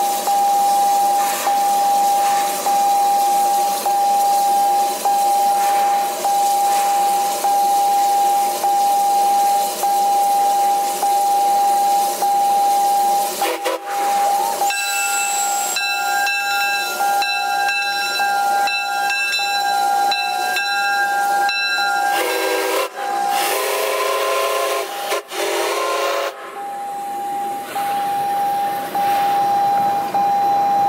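Steam locomotive hissing loudly with escaping steam, with a steady tone that breaks at regular intervals. Partway through, several high ringing tones join in, and then a pitched whistle sounds for a few seconds as the train gets under way.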